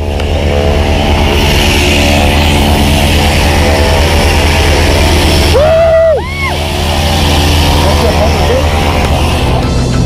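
Light aircraft engine running with a steady, unchanging drone. About six seconds in, a man's voice gives one rising-and-falling whoop over it.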